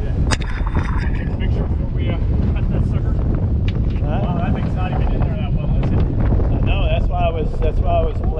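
Steady low rumble of a fishing boat running on open water, with wind buffeting the microphone. A sharp knock comes about a third of a second in, and indistinct voices are heard in the second half.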